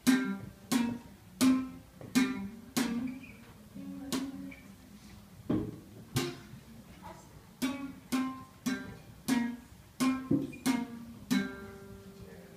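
Classical guitar playing a slow melody in single plucked notes, one to two a second, each note ringing and dying away, with a longer gap between notes near the middle.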